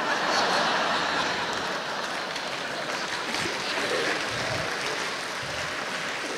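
A church congregation laughing and applauding in response to a joke. The sound swells at the start and then carries on at a slightly lower level.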